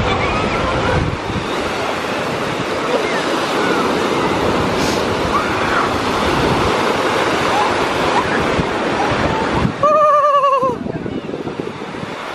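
Small waves breaking and washing up a sandy beach, a steady rush of surf with wind buffeting the microphone. About ten seconds in, a wavering high voice sounds for about a second.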